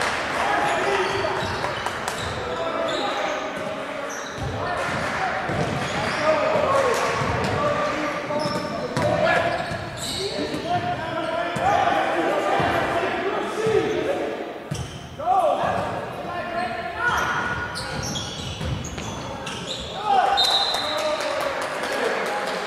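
A basketball being dribbled on a gymnasium's hardwood court during live play, with repeated bounces among players' and coaches' voices calling out across the hall.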